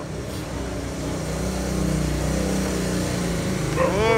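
A motor vehicle's engine running close by, a low steady hum that grows louder over the first two seconds and then holds.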